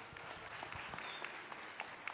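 Congregation applauding. The clapping swells in over about half a second, then holds steady with single claps standing out.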